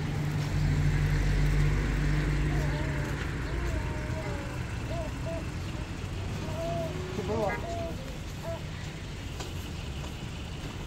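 A road vehicle's engine running past during the first few seconds, then fading, with people's voices in the background.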